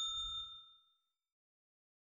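Notification-bell 'ding' sound effect of an animated subscribe button, its ring fading out about a second in.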